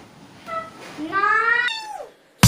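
A cat's meow: a short call, then a longer drawn-out meow that rises and falls in pitch.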